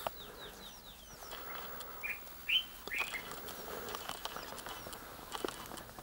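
Wild birds calling: a quick run of short, high descending chirps, then three louder chirps about two to three seconds in.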